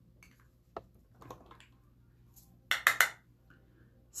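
A makeup brush and a small loose setting-powder jar clinking together as powder is picked up: a faint click about a second in, soft scuffing, then three quick sharp clinks about three seconds in.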